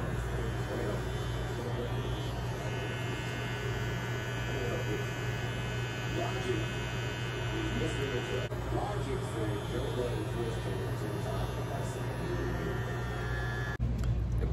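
Electric hair clippers buzzing steadily as they cut hair, with a higher whine added from about three seconds in until past the middle.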